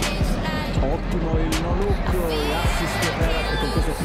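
Background music with a steady drum beat and a singing voice.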